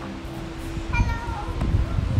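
Young children's high-pitched voices: short squealing calls about a second in and again halfway through, over a low rumble.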